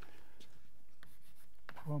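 Chalk writing on a blackboard: a few faint, short scratches and taps of chalk strokes.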